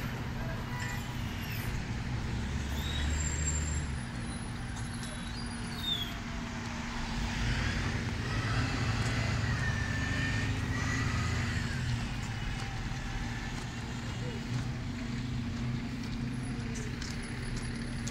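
Road traffic on the street beside the path: car engines and tyres passing over a steady low engine hum, growing louder for a few seconds in the middle as vehicles go by.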